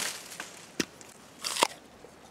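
Crisp crunches of a person biting into and chewing a fresh apple: a sharp crack at the start, another a little under a second in, and a louder cluster of crunches near the end.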